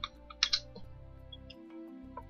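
Computer keyboard keystrokes: a few sharp key clicks, two close together about half a second in, with a fainter one later, over quiet background music.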